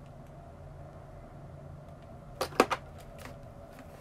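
Small hard objects clicking and knocking as makeup items are rummaged through, a quick cluster of sharp clicks about two and a half seconds in, over a steady low hum.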